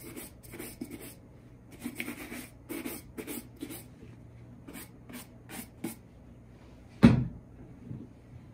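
Bristle shoe brush stroked briskly over the leather upper and welt of a Red Wing Iron Ranger boot, in quick runs of strokes that thin out after about four seconds. About seven seconds in, a single loud thump.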